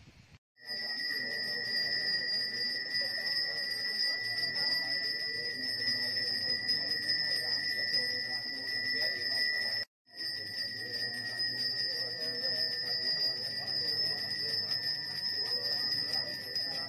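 A Balinese priest's hand bell (genta) rung continuously, giving a steady high ringing. Voices murmur beneath it, and the sound breaks off for a moment about ten seconds in.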